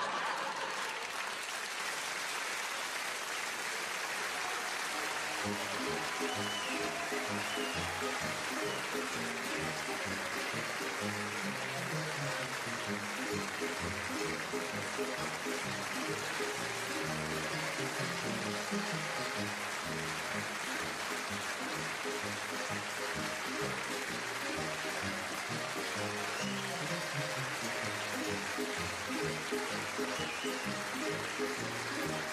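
Audience applauding through the curtain call, with closing music coming in about five seconds in and playing on under the clapping.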